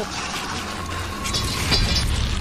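Sound effects of vines coiling and tightening around an arm: a low rumble under a drawn-out creak, with two sharp cracks near the end.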